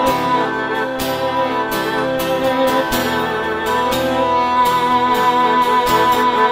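Guitar playing a devotional kirtan melody over held, sustained notes, with a new note struck about once a second.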